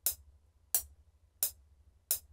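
A DAW metronome clicking at 88 BPM, three short, sharp ticks evenly spaced about two-thirds of a second apart, as the project plays through empty bars.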